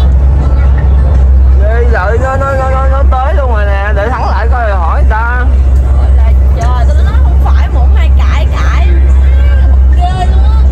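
Steady low drone of a passenger ferry's engine, heard inside the cabin. Between about two and five seconds in, a voice with long held, wavering notes sounds over the drone.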